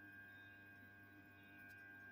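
Near silence: a faint steady electrical hum with a thin high whine over it.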